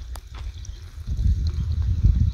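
Low, uneven rumble of noise on the microphone, quieter at first and louder through the second half, with a faint click just after the start.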